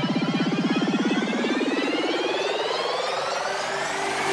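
Psytrance build-up: a rapid pulsing synth bass thins out over the first second or so while several synth sweeps climb steadily in pitch, with no kick drum.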